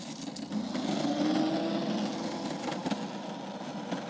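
A small go-kart's motor running as the kart drives past close by and then pulls away; its note rises slightly, is loudest about a second in, then fades.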